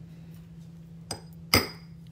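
A light click, then one sharp hammer strike on a steel letter stamp with a short metallic ring, driving a letter into a soft aluminum washer blank on a steel bench block.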